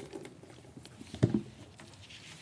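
Scattered light clicks and taps of handling noise, with one louder low knock just past the middle.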